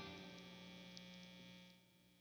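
Near silence: a faint, steady mains hum from the electric guitar rig in a pause between phrases, with the last of a guitar sound fading out at the start. The hum cuts out near the end.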